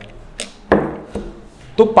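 A few short, sharp knocks and handling sounds, about half a second apart, as a whiteboard marker and board duster are picked up from a desk.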